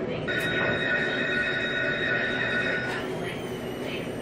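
Centurion Free Spins slot machine playing an electronic sound effect: a steady chord held for about two and a half seconds, then a higher, slightly falling ringing tone for about a second.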